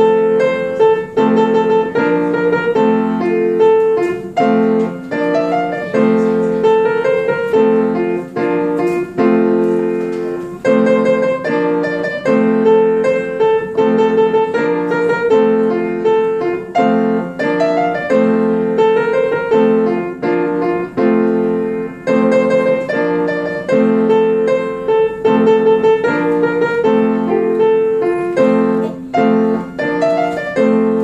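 Piano played by a child, a practised piece going at a steady pace without stopping.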